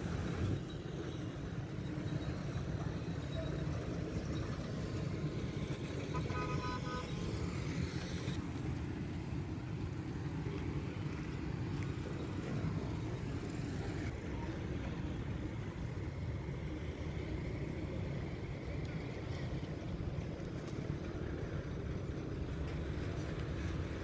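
Steady road-traffic rumble from vehicles on a dusty road, with a short vehicle horn toot about six seconds in.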